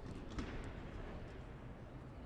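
Room noise of a sparsely filled sports arena during a wrestling bout, with one sharp slap or thud about half a second in as the wrestlers hand-fight on the mat.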